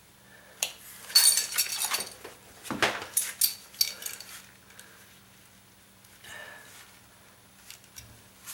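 A hand blade cutting and scraping through a linoleum floor tile: a burst of scratchy scraping and sharp clicks in the first half, with fainter scrapes later.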